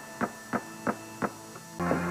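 Dramatic underscore music: a held chord with five evenly spaced plucked notes, about three a second, then a fuller, louder music cue coming in near the end.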